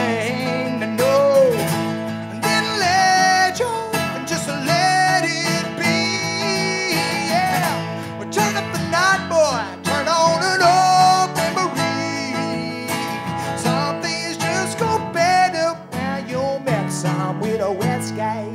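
Live acoustic country music: acoustic guitars strumming while a man sings sliding, drawn-out vocal lines.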